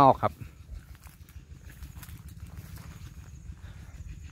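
Footsteps walking through tall grass on a dirt path: soft, irregular rustles and light thuds over a low rumble. A man's voice is heard briefly at the very start.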